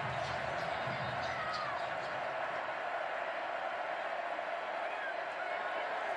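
Stadium crowd noise: a steady hum of many voices from the stands.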